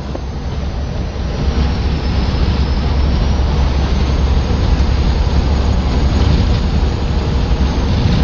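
Steady road and wind noise of a vehicle travelling at highway speed, heard from inside the cab: a deep rumble with a hiss over it, growing a little louder about a second and a half in.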